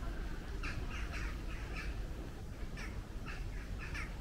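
A crow-family bird calling in two series of short, repeated calls, several calls a second.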